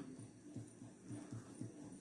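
Faint pen strokes on paper, a few soft taps and scratches as a short number is written out by hand.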